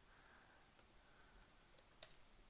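A few faint computer keyboard keystrokes, soft clicks starting a little under a second in, against near silence.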